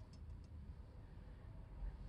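Very quiet car-cabin room tone with the ignition switched off: a faint low hum and a few faint ticks in the first moment.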